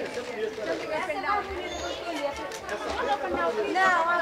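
Only indistinct talk: several voices chattering, with no clear words.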